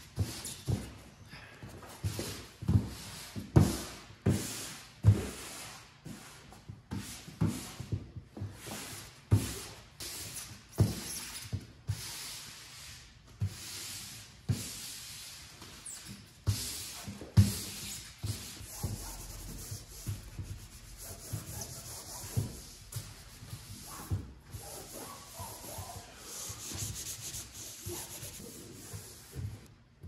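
Vinyl banner being rubbed and pressed down by gloved hands onto adhesive-sprayed foam insulation board: irregular rubbing and swishing with dull knocks, the banner gripping the glue.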